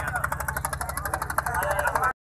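Motor boat engine running with a fast, even pulsing, under the talk of many men aboard.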